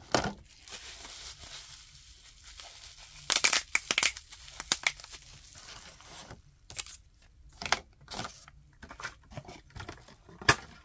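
Plastic bubble wrap and packaging crinkling and crackling as it is handled and dropped into a plastic bin, with a rustle over the first few seconds and a cluster of loud, sharp crackles about three and a half to four seconds in.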